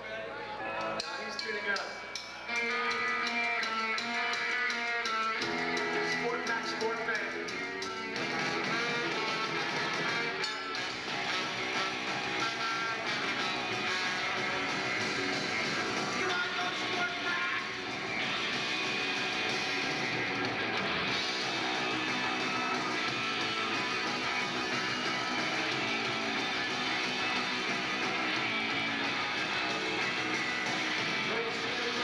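Live rock band with electric guitars, bass and drums playing. It opens with a sparser run of stepped notes, and the fuller band sound takes over about eight seconds in.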